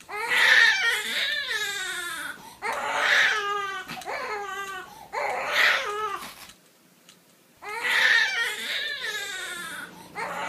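Young infant crying: four long wails with pitch that drops and wavers, with a brief pause about seven seconds in before the last.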